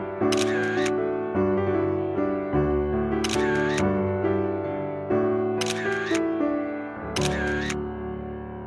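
Background music with sustained notes, with a camera shutter click laid over it four times, each lasting about half a second and spaced one to three seconds apart.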